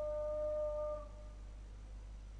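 A steady pitched tone that cuts off about a second in, leaving a low, steady hum.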